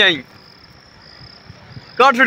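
Faint, steady high-pitched insect trill from the surrounding vegetation, heard after a man's voice trails off in the first moment.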